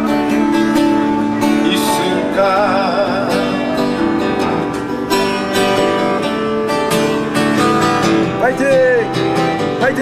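Acoustic guitar strummed through a small amplifier, with a sung melody coming in about two seconds in and again near the end.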